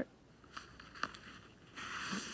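Faint handling noise: a couple of soft clicks, then a brief rustle near the end, as headphones are settled on the head and a nylon puffer jacket shifts.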